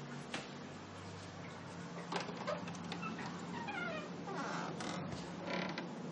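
A wooden door's latch clicking, then its hinges creaking in a few falling squeals as the door is swung open.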